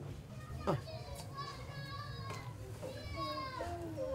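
Faint voices of children playing: scattered high-pitched calls and chatter in the background, over a low steady hum.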